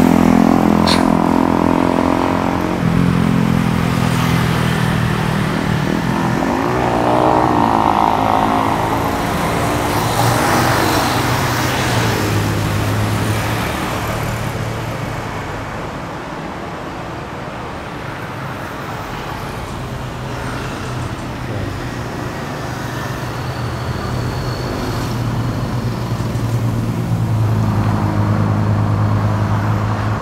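Road traffic going by: motorcycle and car engines passing one after another, swelling and fading, loudest near the start, about a third of the way in and again near the end, with a quieter stretch in the middle.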